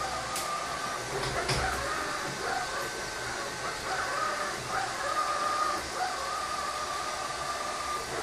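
Stirling robot vacuum cleaner running: a steady whir from its motors with a wavering high whine over it, and a few light clicks in the first couple of seconds.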